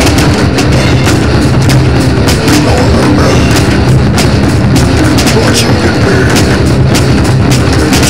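Loud heavy metal song with electric bass played along, over drums with regular sharp hits and cymbal crashes.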